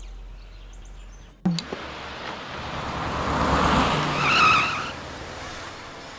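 A car passing: the sound cuts in abruptly about a second and a half in, and a rushing noise swells and then fades. A brief wavering tire squeal comes near its loudest point, about four seconds in.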